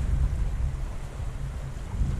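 Low, uneven rumbling noise on an outdoor microphone, the kind left by wind or handling, with no distinct event in it.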